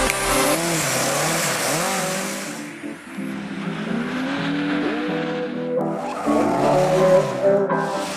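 Lada rally car engines revving up and down through drifts, with tyres skidding on loose dirt, under background music.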